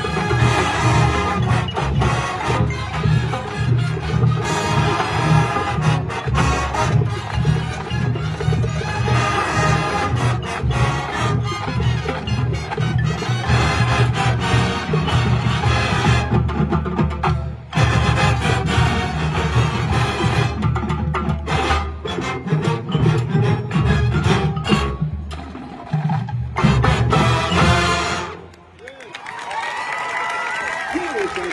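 College marching band playing a brass-and-percussion number, with a steady pounding low brass and bass drum rhythm under the horns. The music breaks off briefly about 17 seconds in and falls away near the end.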